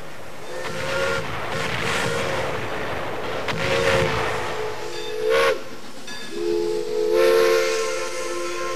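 Steam locomotive whistle blowing a series of blasts, a chord of several steady tones, over the hiss of steam. One blast slides briefly upward about five and a half seconds in, and the last one starts a little after six seconds and is still sounding at the end.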